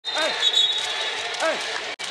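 Basketball-arena fans yelling for a technical foul ("T!"): two loud shouts, each falling in pitch, about a second apart, over the hum of the crowd in a large hall.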